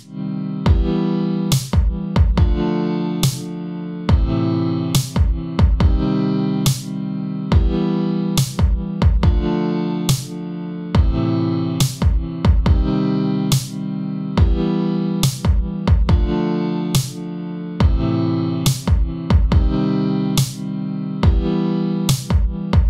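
Electronic beat at 140 BPM with kick and snare hits over sustained synth chords. The synths duck under each kick and snare and swell back between them: sidechain compression from a Fruity Limiter set to compress, keyed by the drums, giving the mix a pumping feel.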